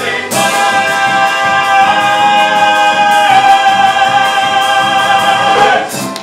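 Male vocal trio with band accompaniment holding one long final chord at the close of a show tune, with a steady drum beat underneath; it cuts off near the end.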